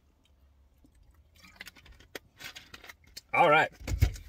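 Faint clicks and rustling of a plastic water bottle being handled after a drink. Near the end comes a short, louder vocal sound from the drinker.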